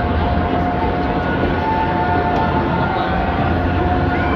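Pre-recorded intro soundscape played loudly through a concert PA: a steady low rumble with a few long held tones above it and no beat.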